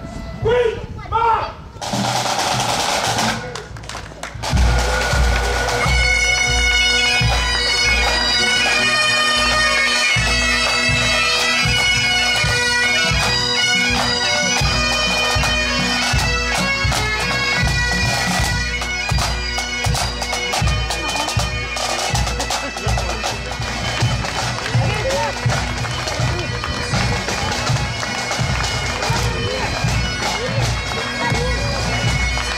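Scottish pipe band playing: Great Highland bagpipes, steady drones under a melody, with a regular drum beat, striking up a few seconds in and then playing on.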